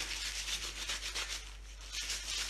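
Gloved hands kneading and rubbing marshmallow fondant in powdered sugar on a wooden board, in quick repeated scuffing strokes.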